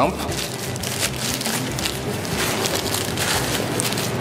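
Tissue paper crinkling and rustling as hands fold it around lamp filters and tuck them into a fabric bag.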